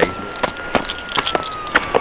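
A few scattered knocks and scuffs from a handcuffed person being held and moved along, over a faint high whistle-like tone that drifts slightly up and back down.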